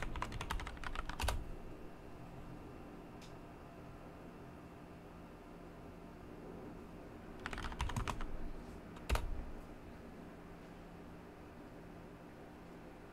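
Typing on a computer keyboard: a quick run of keystrokes in the first second or so, then a few seconds with only a faint steady hum. Another short run of keystrokes comes around eight seconds in, followed by one single harder keystroke about a second later.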